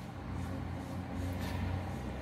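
Steady low hum of distant city traffic coming in through an open window.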